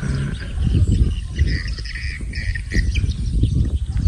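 A bird gives a quick series of four or five short, high chirps in the middle, over a continuous low rumble of wind buffeting the microphone in an open field.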